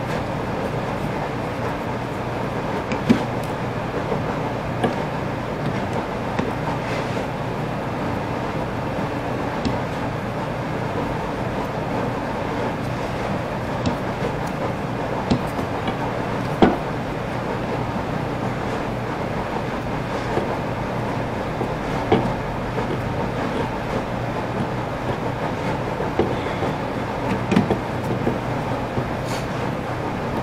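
Steady background hum and noise, with a few short clicks and taps scattered through as a screwdriver drives screws into the plastic rear housing of a DeWalt angle grinder.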